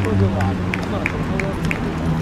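Indistinct shouts and calls from players on an outdoor football court over a steady low hum, with a few short high blips in the second half.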